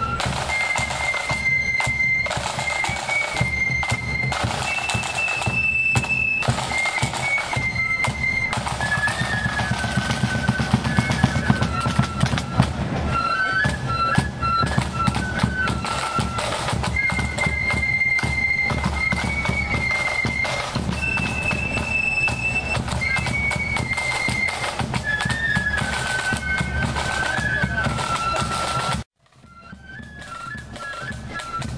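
A marching flute band playing a tune on flutes over snare drums and a bass drum. The melody repeats about halfway through. The sound cuts out abruptly about a second before the end.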